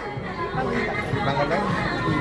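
Background chatter of shoppers in a busy shop, a steady murmur of voices with no single loud sound.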